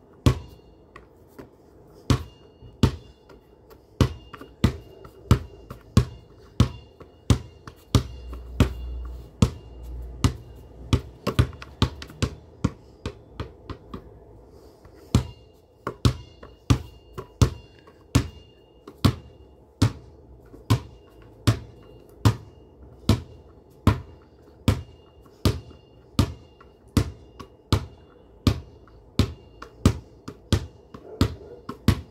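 A basketball being dribbled on hard ground, a steady run of sharp bounces about three every two seconds, with a short break about halfway through.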